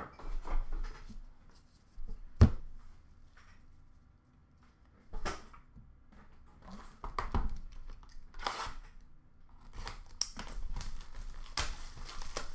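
Trading cards and their cardboard boxes handled on a glass counter: short rustles and slides as cards are set down on stacks, with one sharp knock about two and a half seconds in. Near the end there is denser rustling and tearing as a card box's packaging is handled.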